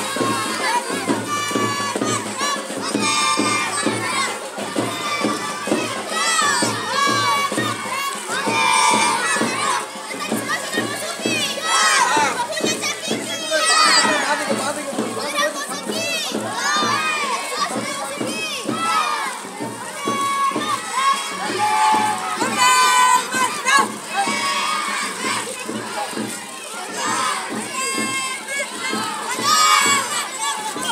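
A crowd of children shouting and calling out together, many high voices overlapping continuously.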